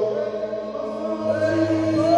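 A man singing a church song into a handheld microphone, holding long, drawn-out notes.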